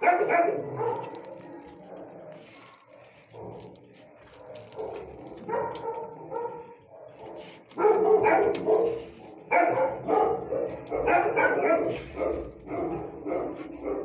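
Dog barking in short bursts: a few barks at the start, sparser and quieter for several seconds, then rapid repeated barking from about eight seconds in.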